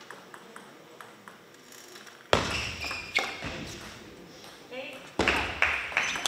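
Table tennis rally: the plastic ball clicks sharply off the rackets and table about three to four times a second for roughly two seconds. As the point ends a loud shout breaks in, and more loud voices follow near the end.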